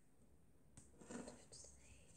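A girl's faint whisper under her breath, lasting about a second and starting near the middle, in otherwise near silence.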